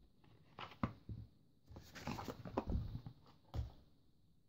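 Hands handling a small cardboard box and its contents, a charger cable and wall charger: a string of light knocks, clicks and rustles over about three seconds as things are lifted out and set down on a soft surface.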